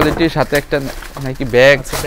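A man's voice talking.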